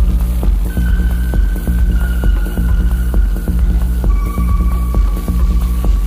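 Electronic club music played in a DJ mix: deep, heavy bass under a steady beat, with long held synth notes above.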